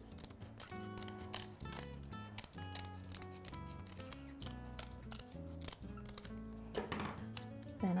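Small scissors snipping through stiff sinamay and a paper pattern, a quick run of short crisp cuts, over soft background music.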